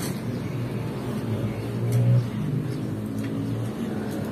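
A low motor hum, like a passing engine, that grows louder to a peak about two seconds in and then eases off.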